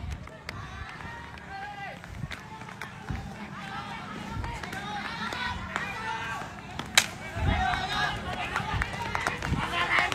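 Several men shouting at a distance, too far off for words, over running footsteps and the jostle of a handheld phone. A single sharp knock about seven seconds in.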